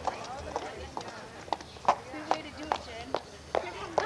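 Quick, regular footsteps of hard-soled shoes on pavement, sharp clicks about two or three a second, starting about a second and a half in.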